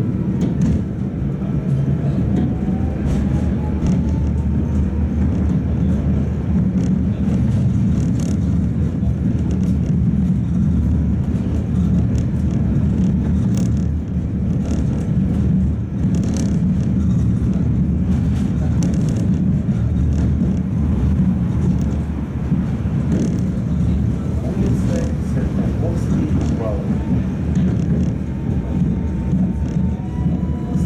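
Modernized Tatra T3 (MTTCh) tram heard from inside the passenger cabin while running: a steady low rumble from the running gear, with repeated clicks and knocks from the wheels on the rails. A faint rising whine sounds in the first few seconds as it gathers speed.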